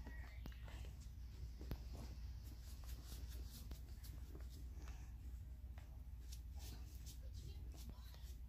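Faint, indistinct low voices with small hissy rustles over a steady low hum.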